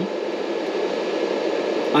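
Steady rushing noise of a running fan, even and unchanging.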